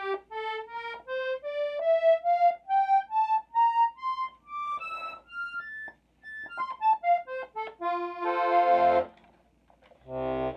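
Hohner Erika Club model two-row button accordion in C and F playing single treble notes one at a time in a rising run, then quicker notes coming back down. Just before the end it plays a full chord with bass notes. The reeds are freshly tuned to A440 with a tremolo beat.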